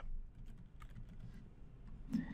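Faint typing on a computer keyboard: a short run of separate keystrokes.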